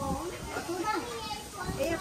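Background chatter: several voices talking at once, not clear enough to make out words.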